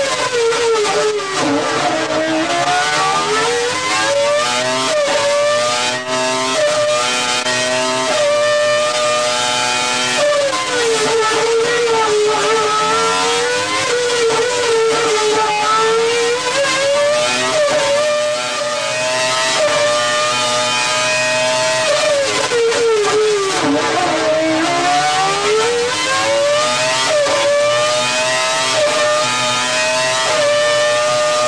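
Renault Formula One racing engine running on a test bench at very high revs, its pitch wavering. The revs drop sharply about a second and a half in and again past twenty seconds, then climb back up.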